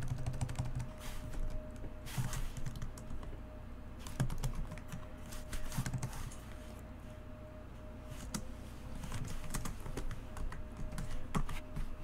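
Typing on a computer keyboard: irregular runs of key clicks, thinning out for a couple of seconds past the middle.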